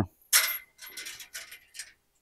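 A short rustle about a third of a second in, then several faint, light metallic clinks.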